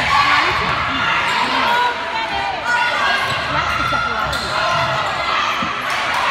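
Volleyball rally in a gym: the ball struck and hitting the floor, amid a steady din of spectators' and players' voices and shouts.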